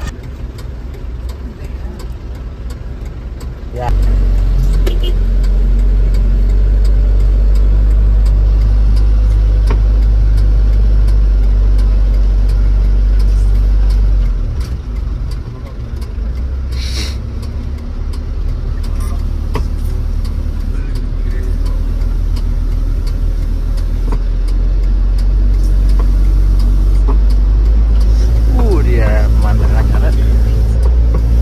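Cabin noise of a Mitsubishi Canter microbus's diesel engine pulling on a steep mountain road: a heavy low drone that jumps louder about four seconds in, eases briefly around halfway, then builds again toward the end.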